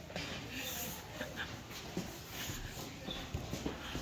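A hand grooming brush stroking a Friesian horse's coat: a run of short, soft rasping strokes, with a few brief squeaky sounds about a second in.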